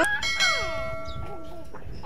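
Edited-in subscribe-button sound effect: a bell chime rings with several steady tones while a few sliding notes fall in pitch, the chime stopping shortly before the end.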